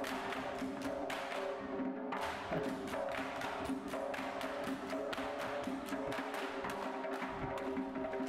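Music for a Georgian sword dance: a held, droning chord with many quick, sharp clacking strikes throughout.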